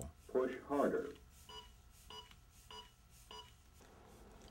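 AED Plus Trainer 2 training defibrillator's CPR metronome beeping four times, evenly at about 100 beats a minute, to pace chest compressions. A short, quiet voice prompt comes just before the beeps.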